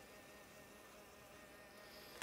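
Faint, steady buzzing whine of a battery-powered toy bubble shooter's small motor as it blows a stream of bubbles.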